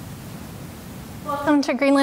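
Steady hiss of room tone and microphone noise. About one and a half seconds in, a woman starts speaking.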